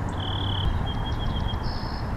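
Wind rumbling on the microphone beside open water, with a few thin, high, steady whistled notes: one about a quarter second in, a broken run after it, and a higher one near the end.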